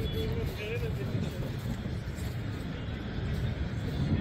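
Open-air ambience: a steady low rumble with faint, indistinct voices of people, one voice clearest in the first second.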